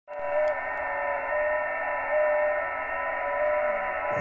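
HF transceiver receiving: band hiss with several steady whistling carrier tones, the strongest one wavering slightly in pitch, all with the narrow, top-cut sound of single-sideband receiver audio.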